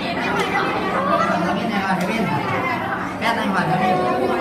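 Chatter of several people talking over one another, with no other clear sound.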